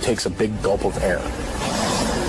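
A voice for about the first second, then a steady low rumbling noise that builds from about halfway through.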